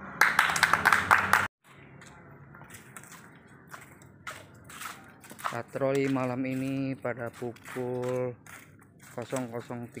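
Loud men's voices shouting together, cut off abruptly after about a second and a half. Then, over faint background noise, a man's voice gives two long, drawn-out calls on a steady pitch around six and eight seconds in, followed by short quick syllables near the end.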